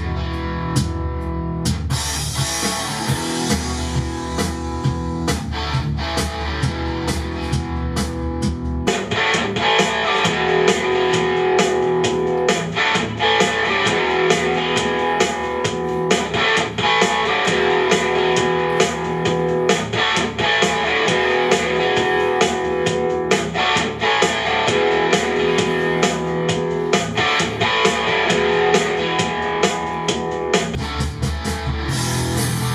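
Rock instrumental with electric guitar and drums, played first through a hi-fi home theater system with a Pioneer amplifier. About nine seconds in it switches to a Chinese TENMIYA Bluetooth boombox: the deep bass drops out, the top end is cut off, and the sound turns more midrange-heavy.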